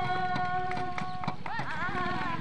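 A woman singing a folk song: one long held note that breaks into a wavering, ornamented melody about one and a half seconds in, over quick, steady drum beats.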